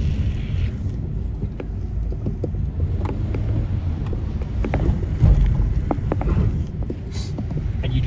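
Car rolling down a steep hill: a steady low rumble of road and wind noise, with scattered light ticks and knocks.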